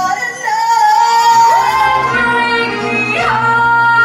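Woman musical-theatre singer with band accompaniment: a quick sliding vocal run, then a long belted note held steady from about three seconds in.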